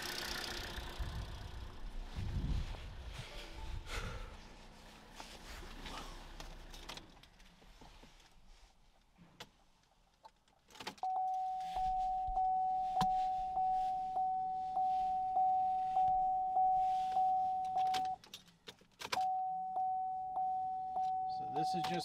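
Chevrolet Sonic's dashboard warning chime while the ignition key is cycled: a single-pitch chime repeating about one and a half times a second. It starts about halfway through, stops for about a second, then resumes. The first seconds hold rustling and knocks.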